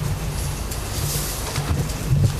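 Steady low hum under an even hiss, the background noise of a courtroom's microphone feed, with no speech.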